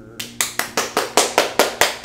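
A man clapping his hands, about nine quick, even claps at roughly five a second. Under them, the last acoustic guitar chord is faintly dying away.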